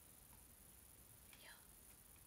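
Near silence: room tone, with a faint whispered murmur about one and a half seconds in.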